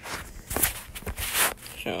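Two loud rustling, rubbing noises from a phone being handled and repositioned close to its microphone, about half a second in and again around a second in.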